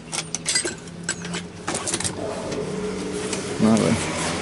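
Hand tools clicking and clinking together as a hand rummages through a packed tool bag, with several sharp clicks in the first half. A low voice comes in near the end.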